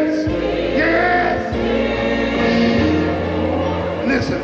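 Gospel choir singing long held notes over a steady low instrumental accompaniment.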